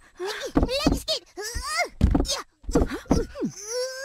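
A young woman's voice moaning and groaning in a string of short cries, most of them falling in pitch, with brief catches of breath between: sounds of strain as she bends to lift a plastic laundry basket.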